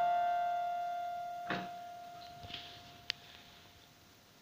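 The last chord of an electronic keyboard dies away slowly until a single note lingers. A soft knock comes about a second and a half in, and a sharp click near the end.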